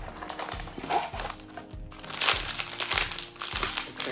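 Crinkling of a plastic blind-bag packet being pulled out of a cardboard box, loudest a little past halfway, over background music with a steady beat.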